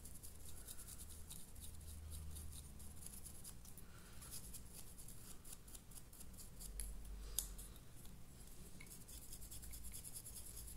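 Dry brush scrubbed back and forth over a model's sculpted stonework, the bristles making faint, quick scratching strokes, with one sharper click about seven seconds in.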